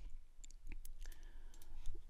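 Several light clicks of a computer mouse, spread unevenly over the two seconds, over a low steady background hum.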